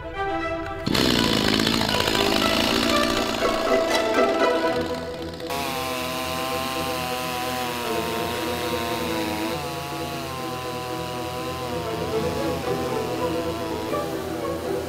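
A petrol two-stroke chainsaw running at full speed cuts in abruptly about a second in. About five seconds in, classical string music takes over.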